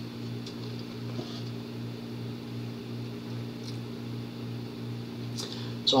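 Room tone: a steady low machine hum, with a few faint clicks scattered through it.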